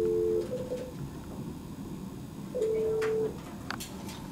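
Two short steady electronic beeps about two and a half seconds apart: the first a two-note chord, the second a single tone, each under a second long. A few clicks come near the end.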